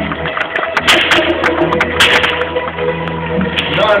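Sharp whip cracks, the loudest about one and two seconds in, with lighter cracks between, over background music.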